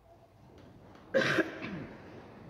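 A person coughs once, short and sudden, about a second in, in a large, otherwise quiet church.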